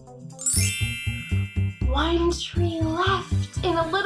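Children's background music with a steady beat, and a bright, shimmering chime glissando sweeping through it about half a second in. From about two seconds in a voice comes in over the music.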